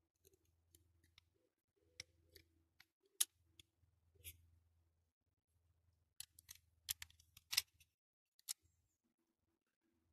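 Faint clicks and taps of small plastic and diecast model-car parts being handled and pushed into place by hand. There are a few single clicks, the sharpest about three seconds in, then a quicker run of them from about six seconds.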